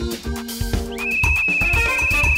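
A referee's whistle blown in one long trilling blast, starting about halfway through, over cheerful background music.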